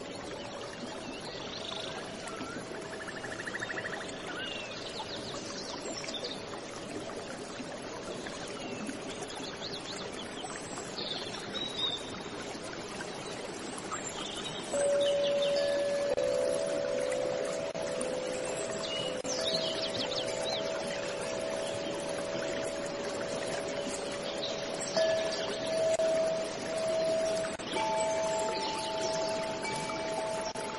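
Steady running-water noise with scattered small bird chirps. About halfway in, a few soft sustained chime-like tones come in and hold to the end.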